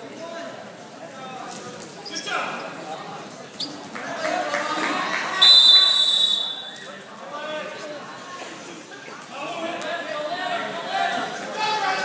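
A referee's whistle blown once, a shrill steady blast about a second long in the middle, over gym crowd chatter and voices; a couple of knocks from the mat come just before it.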